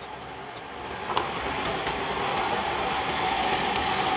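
A passing vehicle makes a steady rushing noise that grows gradually louder, with a faint steady hum in the second half and a few light clicks.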